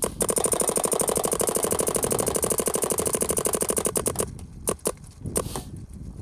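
Planet Eclipse Geo 4 electropneumatic paintball marker firing in ramping mode: a rapid, even string of shots for about four seconds, then a few single shots near the end.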